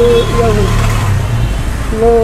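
A steady low hum of nearby road traffic, with a single spoken word at the start; the hum fades out a little before the end.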